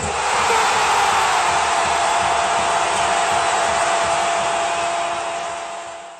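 Loud, steady crowd noise of a stadium, swelling in at the start and fading out near the end.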